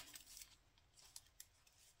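Near silence: faint rustle of paper pieces being handled, with a couple of soft ticks.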